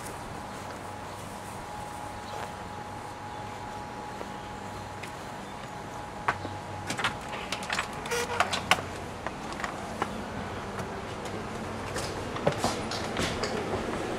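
Quiet indoor room tone with a faint steady hum. From about six seconds in come scattered light clicks and knocks: footsteps and movement through the house.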